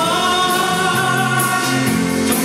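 Live band playing, with a male singer holding one long sung note over electric guitars, bass and drums.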